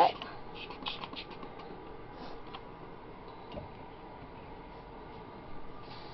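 Cardboard egg-carton hide being handled and set into a glass terrarium: faint scratchy clicks and rustles, and a soft thump about three and a half seconds in.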